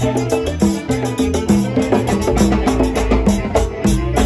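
Live Latin band music: congas played by hand in quick, busy strokes over a moving bass line and steady beat.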